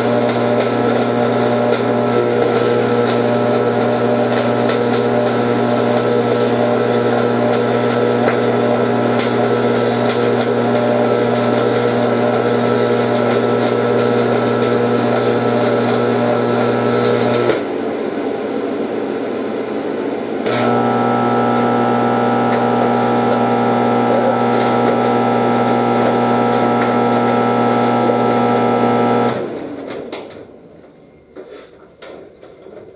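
Stick (arc) welding: the arc crackles and sizzles over a steady electrical hum from the welder, one long run of about 17 seconds, a break of about 3 seconds, then a second run that stops shortly before the end. The welder suspects the amperage was set too high on these beads.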